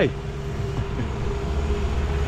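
Road traffic: a motor vehicle engine running with a steady low hum.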